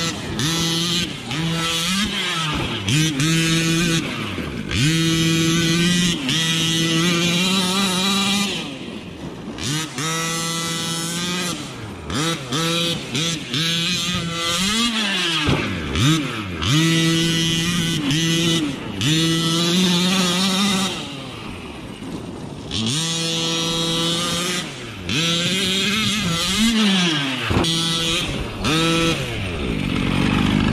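Losi MTXL 1/5-scale RC monster truck's Bartolone-modified Rovan 45cc reed-case two-stroke engine with a Bartolone pipe, being driven hard. It revs up repeatedly and is held at high revs for several seconds at a time, falling back off throttle between bursts.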